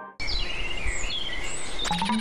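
Birds chirping over a steady outdoor background hiss. The sound starts abruptly just after the last tones of a musical chime die away, and a few quick clicks come near the end.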